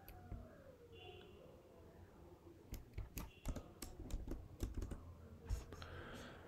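Computer keyboard typing: light, irregular key clicks, a few at first and a busier run from about three seconds in until near the end.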